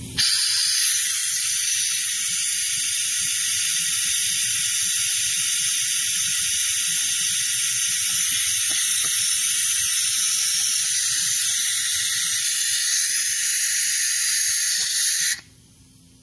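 Compressed shop air hissing steadily through the venturi of a Maddox cooling-system vacuum refill tool; it starts just after the beginning and cuts off suddenly near the end. The fill suction hose has been left open, so the tool pulls little or no vacuum on the cooling system.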